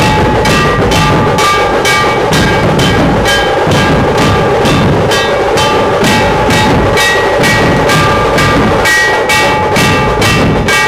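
Loud drum-led music: drums beating a fast, steady rhythm of about three to four strokes a second, with held melody notes above it.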